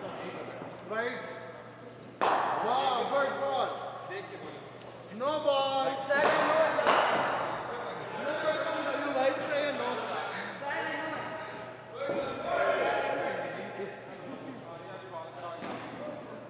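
Men talking, in speech the recogniser did not write down, with a couple of sharp knocks about two and six seconds in.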